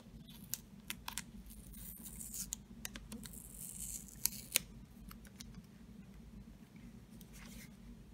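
Fingernail picking and scratching at the seal of a cardboard box, with several sharp clicks and short tearing scrapes as the seal gives way.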